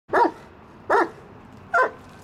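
Great Dane barking three times, evenly spaced, while tied up and left alone: he doesn't like to be by himself.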